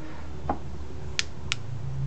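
A soft knock, then two sharp clicks about a third of a second apart from a green laser pointer's switch as it is turned on, over a steady low hum.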